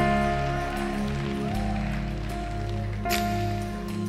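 Church worship band playing slow, sustained chords, the bass note changing about a second and a half in.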